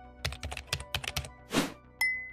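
Keyboard typing sound effect: a quick run of key clicks, then a brief hiss-like burst near the end, over faint background music.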